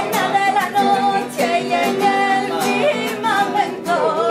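A singer holding long, wavering notes over strummed acoustic guitar.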